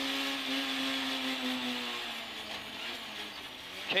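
Peugeot 106 rally car's four-cylinder engine heard from inside the cabin, holding a steady note under load, then fading about two seconds in as the driver lifts off approaching a left hairpin.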